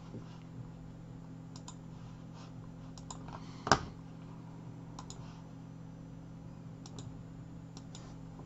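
A handful of scattered computer mouse and keyboard clicks, the loudest nearly four seconds in, over a faint steady low hum.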